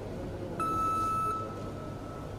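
One electronic beep: a steady high tone that starts just over half a second in, holds for under a second and then trails off, over the low hum of a large hall.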